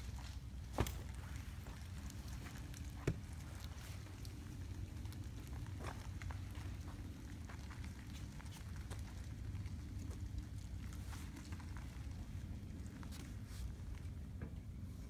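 Tesla Model S creeping backwards and turning slowly on an asphalt driveway under Summon, its electric drive giving little more than a low steady rumble of tyres and wind. Two sharp clicks come about one and three seconds in.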